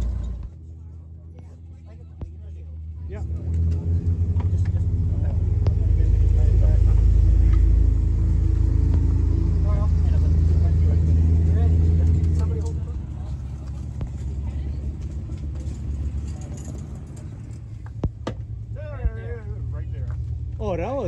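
A motor vehicle engine running steadily nearby, swelling about three seconds in and easing off after about twelve seconds to a lower rumble, with a couple of sharp clicks near the end.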